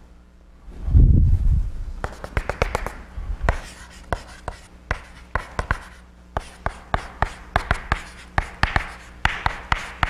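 Chalk writing on a blackboard: a quick run of sharp taps and short scratchy strokes as letters are written. A dull low thump comes about a second in, before the writing starts.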